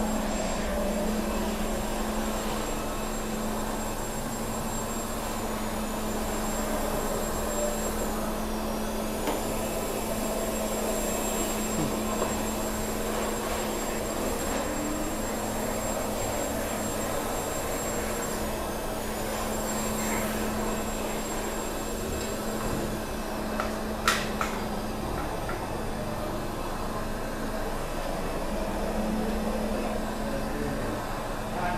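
HiClean HC50B walk-behind floor scrubber-dryer running steadily as it is pushed along, its brush and suction motors giving a continuous hum with a faint high whine. One sharp knock comes late on.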